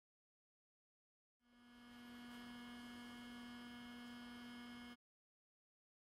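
A steady electrical hum, a low tone with a thin whine of several higher tones above it, fading in over about half a second and cutting off suddenly after about three and a half seconds.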